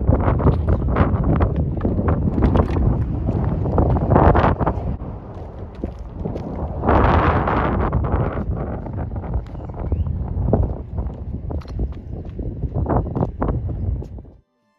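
Wind buffeting the microphone, with crunching footsteps on loose gravel and stones throughout and a louder rush of wind about seven seconds in.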